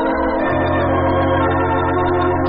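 Organ music bridge: sustained chords over a held bass note that re-enters about half a second in, marking a scene change in a radio drama.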